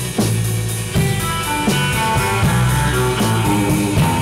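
Rock music played on guitar and drum kit, with a steady low bass line and regular drum hits.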